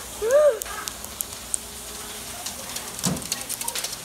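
A brief wordless vocal exclamation just after the start, then faint rustling and scattered clicks from a handheld phone being moved and handled, busier near the end.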